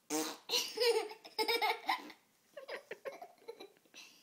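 Laughter: a loud run of laughing in the first two seconds, then quieter, broken giggles.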